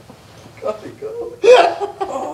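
A man laughing in short voiced bursts, loudest about one and a half seconds in.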